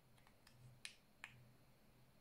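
Two faint, sharp clicks about half a second apart, the first the louder, from the record button on a DJI OM4 gimbal's handle being pressed to stop video recording; otherwise near silence.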